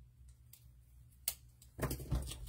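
Small clicks and taps from handling a roll of glue dots and a paper die-cut piece on a wooden tabletop: one sharp tick a little past a second in, then a short cluster of taps near the end, over a faint low hum.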